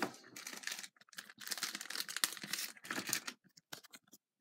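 Thin plastic card sleeve being handled, crinkling in irregular bursts for about three and a half seconds, then a few short clicks near the end.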